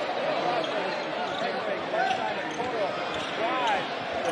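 Basketball game on hardwood: a basketball dribbling and sneakers squeaking in short rising-and-falling chirps over a steady murmur from the arena crowd.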